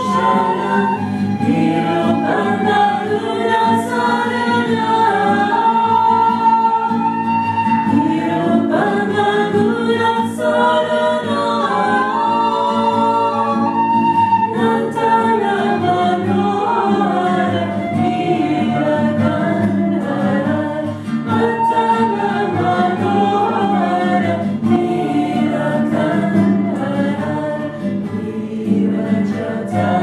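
Several women singing a Shiva kirtan (Hindu devotional chant) together, accompanied by a strummed acoustic guitar.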